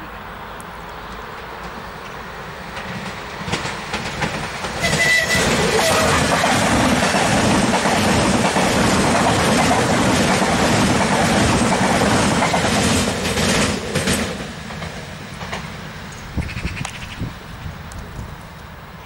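Stadler Flirt electric multiple-unit trains passing close by: a rumble that builds as one approaches, then loud wheel-on-rail noise with rapid clicking over the rail joints and nearby switches for about nine seconds, fading as the trains go by.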